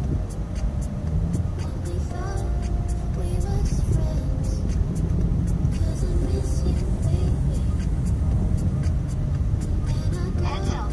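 Honda Civic cabin noise while driving, a steady low rumble of engine and tyres, with the car radio playing a song with singing underneath.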